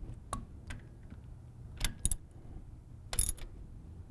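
Ratchet wrench clicking in a few short, separate bursts as the bolts on a Fisher EZR regulator's bonnet are drawn down, over a faint steady low hum.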